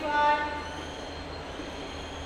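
Chalk squeaking on a chalkboard as a number is written: a short high squeal in the first half-second, then quieter, over a steady low hum.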